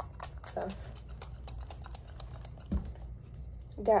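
Quick, irregular light clicks and taps of a plastic spray bottle being handled, with one soft thump a little before three seconds in.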